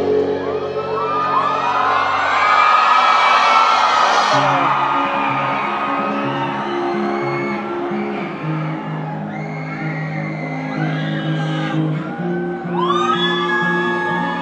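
A live rock band's held chord ringing out under a crowd whooping and cheering, then guitar and bass starting a slow figure of held notes about four seconds in, with more crowd calls near the end.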